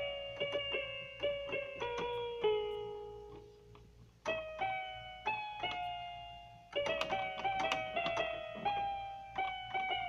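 Electronic keyboard played by hand: a melody of single notes that pauses on one long fading note a couple of seconds in, then picks up again, with a quicker run of notes from about seven seconds in.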